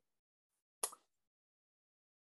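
Near silence, broken about a second in by one short, faint hiss, strongest in the high treble.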